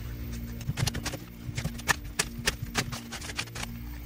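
A deck of oracle cards being shuffled by hand: a quick, irregular run of card clicks and flicks, over a steady low drone of background music.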